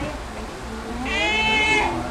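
A high-pitched, drawn-out vocal squeal or cry, a bit under a second long, starting about a second in, over voices talking in the room.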